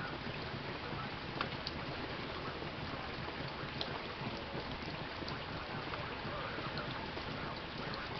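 Rain falling on a waterlogged yard, now easing to a lighter fall: an even, steady hiss with a few faint ticks of drops.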